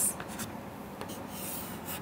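Chalk writing on a chalkboard: a few faint, short scratching strokes.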